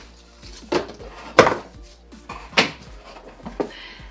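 Glass wine bottles handled in a cardboard shipping box: about four sharp knocks and clinks as a bottle is lifted out of its cardboard slot, the loudest about one and a half seconds in.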